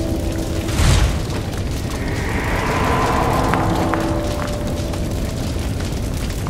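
Cinematic intro sound design: a deep boom hit about a second in, over a steady low drone with a swelling whoosh through the middle.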